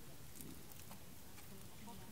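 Faint crumbling and patting of loose soil as hands heap it and press it down into a mound over a grapevine graft.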